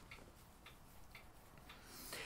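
Near silence with a faint, regular ticking, about two ticks a second.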